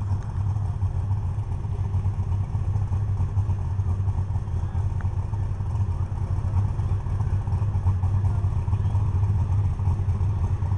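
Pulling tractor's engine running at low, steady revs with a loud low rumble, no revving.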